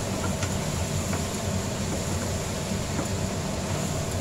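Steady low rumbling noise with a hiss, and a few faint taps of a wooden spatula stirring in a frying pan.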